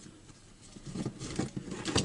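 Plastic parts of an Echo SRM-22GES trimmer's control handle being handled and fitted together: a run of small clicks and scrapes starting just under a second in.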